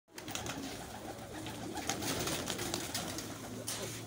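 A large flock of domestic pigeons cooing together in an overlapping, continuous chorus, with scattered short clicks among them.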